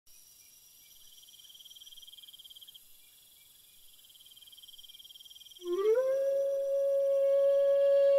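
A faint, high trill pulsing rapidly for a few seconds. Then, about five and a half seconds in, a long howl-like tone slides up in pitch and holds steady, much louder than the trill.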